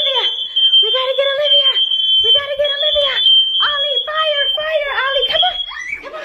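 Household smoke alarm sounding a shrill, steady high tone, with a raised high-pitched voice calling out over it in several long, drawn-out cries about a second apart.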